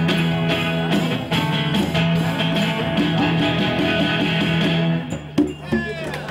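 A small live band of strummed acoustic guitars and congas playing the close of a song; the music stops about five seconds in, followed by two last sharp strikes.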